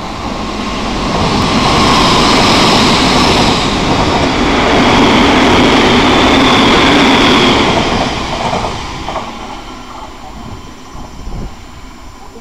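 Odakyu 1000 and 3000 series electric commuter train passing through a station at speed without stopping. The wheel-and-rail running noise builds as it approaches, stays loud for about six seconds as the cars go by, then fades as it pulls away, with a few faint clicks near the end.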